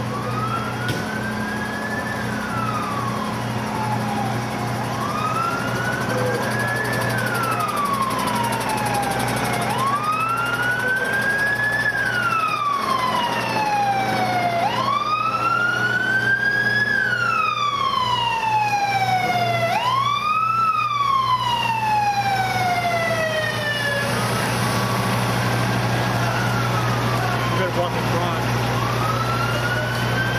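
Emergency vehicle sirens wailing, each cycle a quick rise and a slower fall about every five seconds. A second siren overlaps in the middle, then they stop and one starts again near the end. A steady low engine hum from idling fire apparatus runs underneath.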